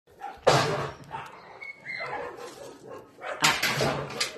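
Dog barking in two harsh outbursts, one about half a second in and another near the end, with a brief high whine between them.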